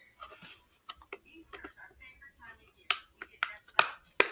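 Red plastic phone case clicking and snapping as fingers pry it off the phone: a run of light clicks, with a few sharp snaps in the last second or so.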